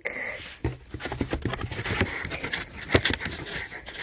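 Plastic-wrapped cord and cardboard packaging being handled: a run of crinkling and rustling with small clicks and scrapes.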